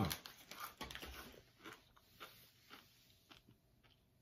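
Faint crunching of toasted corn kernels being chewed: a run of small irregular crunches in the first second or so, thinning to a few scattered ones.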